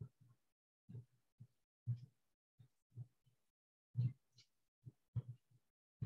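Faint low thumps in a loose, beat-like pattern, about one to three a second, with silence between them.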